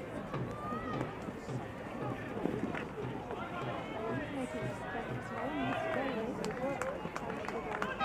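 Live pitch-side sound of a field hockey match: players' and spectators' shouts and calls overlapping, with a few sharp knocks of stick on ball, the loudest about two and a half seconds in.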